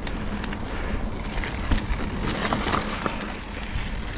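Sonder Evol GX mountain bike rolling along a dirt trail: steady tyre rumble and noise with a few sharp clicks and rattles from the bike.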